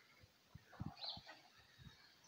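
Near silence: faint outdoor ambience with a few soft low blips and a faint higher chirp about a second in; no aircraft is heard.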